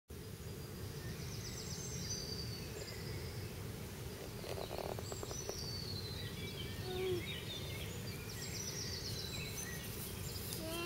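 Songbirds singing from the surrounding trees: repeated chirps, trills and falling whistled phrases. A steady low outdoor rumble sits beneath them.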